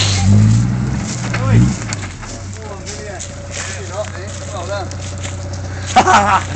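Toyota LandCruiser diesel engine idling with a steady low hum, with people's voices talking over it, louder in the first couple of seconds.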